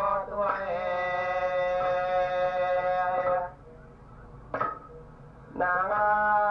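A recorded man singing unaccompanied in a chant-like style: one long held, slightly wavering note that breaks off after about three and a half seconds, then a short pause with a brief breath-like sound, and the singing picks up again near the end. A steady low hum runs underneath.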